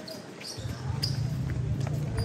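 A basketball bouncing several times on an outdoor hard court, with players' voices. A low steady rumble comes in about half a second in and stays.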